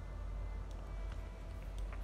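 A few faint, short clicks of small metal parts as a retaining clip is fitted onto the chuck of a Ryobi SDS rotary hammer, over a steady low hum.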